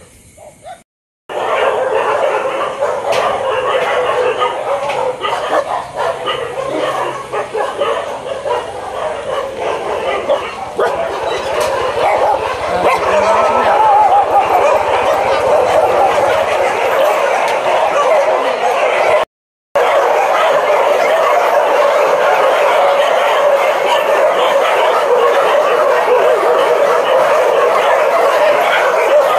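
A large pack of shelter dogs barking and yelping all at once in a loud, continuous chorus, starting about a second in. It is alarm barking at a stranger's arrival.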